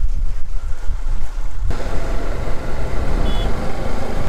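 Heavy wind rumbling and buffeting on the microphone. It grows fuller and louder about halfway through.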